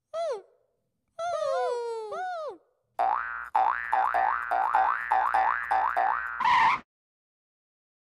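Cartoon sound effects: high squeaky chirps from the jelly bunnies, several at once, then a quick run of springy boings, about three a second, for several seconds as they bounce. It ends in a short whoosh.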